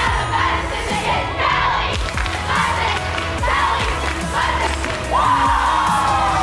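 A group of teenage girls shouting and cheering together in a tight huddle, their voices rising and breaking off in repeated bursts, with music underneath.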